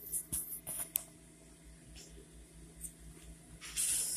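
Handling noise from a phone being moved and repositioned: a cluster of short rustles and scrapes in the first second ending in a sharp click, then a louder rustle near the end.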